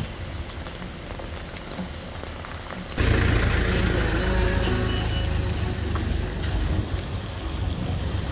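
Slow traffic on a wet, water-logged road: vehicle engines and tyres on wet pavement under a steady rain-like hiss. About three seconds in the sound jumps abruptly louder, with a heavy low rumble.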